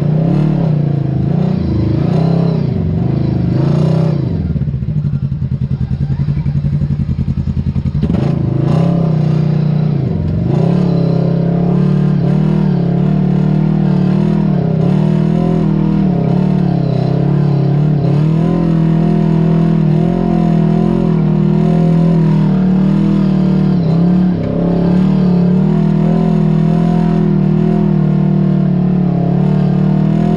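Off-road vehicle engine running under load, its pitch rising and falling with the throttle, with a brief drop in level about three-quarters of the way through.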